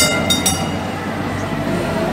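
Istanbul's red heritage street tram running close by, a steady low rumble, with a brief high metallic ringing in the first half second.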